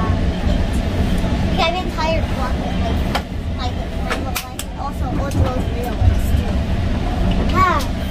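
Steady low rumble of a GO Transit commuter train running, heard from inside the coach, with a few sharp clicks. Short high voices break in now and then, most clearly near the end.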